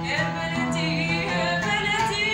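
A young woman singing an Arabic song, her held notes wavering in pitch, with a stringed instrument played alongside.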